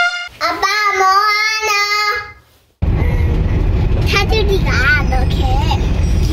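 A short sung phrase in a child's voice, wavering in pitch, fading out about halfway through. Then comes the steady low rumble of a car driving, heard from inside the cabin, with a child talking over it.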